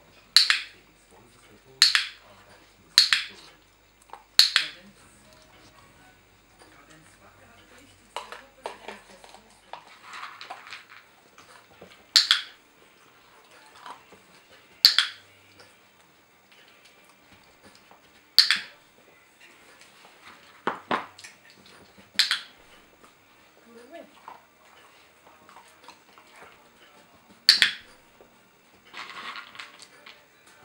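A dog-training clicker clicking sharply about nine times at uneven intervals, several seconds apart after the first four quick ones, marking a puppy's behaviour for a food reward.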